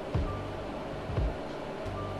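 Background music with soft low beats.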